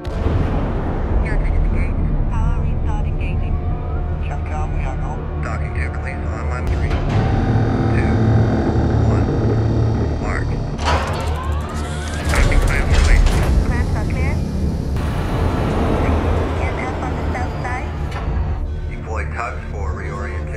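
Film sound mix of a giant spaceship launching: a deep steady rumble that comes in suddenly at the start, under a sustained dramatic orchestral score, swelling loudest a little past the middle.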